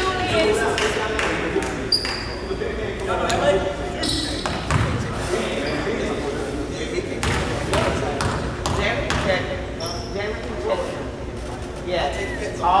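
Echoing gym ambience during a basketball game: a steady murmur of indistinct voices, a basketball bouncing on the hardwood in several separate knocks, and a couple of short high squeaks, one about two seconds in and one near the end.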